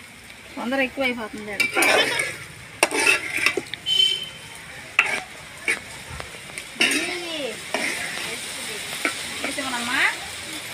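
A metal spatula stirring and scraping a crumbly mixture frying in a steel pan over a wood fire: a steady sizzle broken by repeated sharp scrapes and clicks of metal on the pan.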